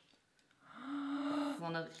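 A woman's voice: a drawn-out, held "ooh" of amazement starting under a second in, then a short "oh" near the end.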